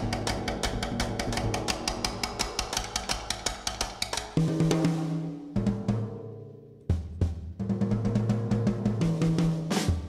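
Drum kit being played with sticks: a fast, even run of strokes on the snare and cymbals for the first four seconds. Then held low notes from other instruments come in under scattered drum hits, the sound dips briefly, and a loud hit lands near seven seconds.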